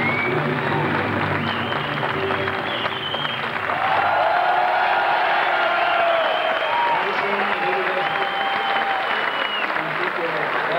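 Audience applauding and cheering over posing music with long held notes, the clapping steady throughout.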